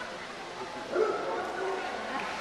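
A dog gives one short bark about a second in, over the murmur of a crowd.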